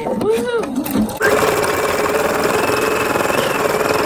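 Husqvarna Viking Topaz 40 embroidery machine: a few short whines that rise and fall in pitch as it shifts the hoop to a new spot. A little over a second in, it abruptly starts stitching at a steady, fast rate.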